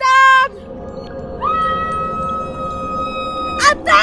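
A woman shouting through cupped hands: a short loud call at the start, then a long, steady, high-pitched held call, then two short calls near the end.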